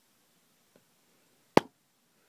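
A single sharp click about one and a half seconds in, in an otherwise quiet room.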